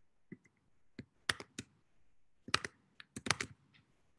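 Computer keyboard and mouse clicks: a string of about ten short, sharp clicks at uneven intervals, some in quick pairs and threes.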